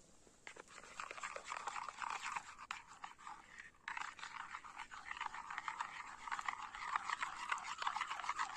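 A metal spoon mashing and stirring crumbled dried yogurt in water in a plate: rapid wet scraping and squelching that starts about half a second in, with a short break about four seconds in.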